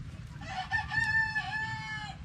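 A rooster crowing once: one long call starting about half a second in, wavering slightly in pitch.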